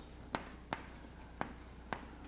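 Chalk tapping and scratching on a chalkboard as a word is written by hand, with four sharp, separate taps.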